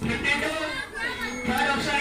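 Chatter of a group of schoolchildren, several voices talking at once.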